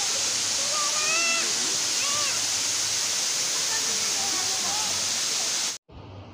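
Steady rush of a tall waterfall pouring onto rock and into its plunge pool, with faint voices of people calling over it; the sound cuts off abruptly near the end.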